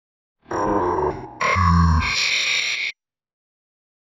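Cartoon sound effect with a grunt-like voice, in two parts about two and a half seconds long in all, with a short dip between them; the second part is louder, and it cuts off suddenly.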